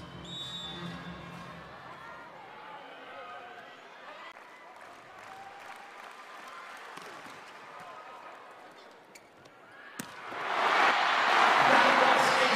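Volleyball arena crowd noise with a murmur of voices, then a single sharp hit about ten seconds in, after which the crowd noise swells up loudly.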